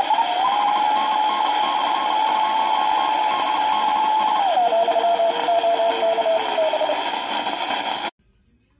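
Radio receiver output with a steady heterodyne whistle from an external 455 kHz BFO, built on the Ten-Tec 1050 design, beating against a received signal over a hiss of band noise. The whistle glides up at the start, holds, then steps down to a lower pitch a little past halfway as the BFO knob is turned, and the sound cuts off abruptly at the end.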